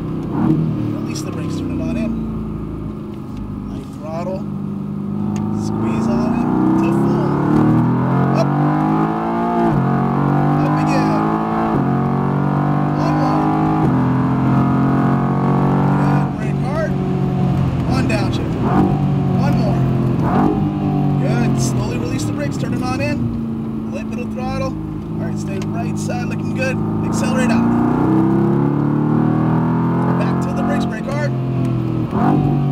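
Mercedes-AMG GT R's twin-turbo V8 under hard acceleration, rising in pitch and dropping back sharply at each upshift. Later it falls in pitch as the car brakes and slows, then climbs again near the end as the throttle comes back on.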